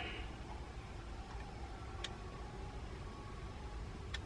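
Faint steady background noise with a few faint steady tones, and a single short click about two seconds in.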